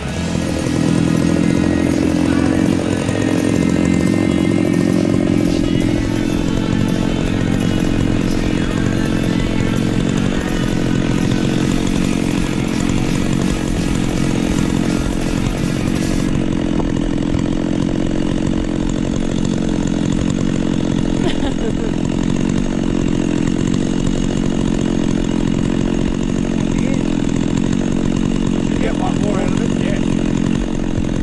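Stihl MS660 two-stroke chainsaw, mounted on an Alaskan mill, idling steadily between cuts with no revving.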